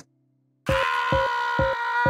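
A short music-like sound effect starting about two-thirds of a second in: a held, bright chord-like tone over a beat of regular thuds, about two a second.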